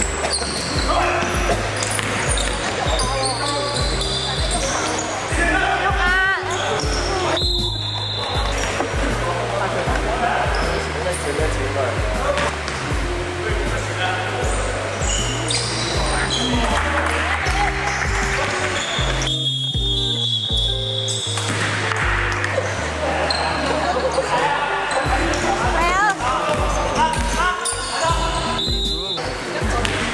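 Basketball bouncing on a hardwood gym floor during play, mixed with background music that has a steady stepping bass line.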